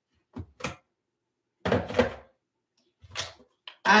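Objects being handled and knocked about in a desk organizer: a handful of separate thunks and clatters. The largest comes about two seconds in.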